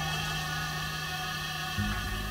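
Experimental ensemble music: a steady low drone with held higher tones above it, and a new low note coming in near the end.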